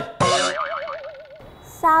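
Comic 'boing' sound effect: a springy tone whose pitch wobbles rapidly up and down for about a second and then cuts off abruptly.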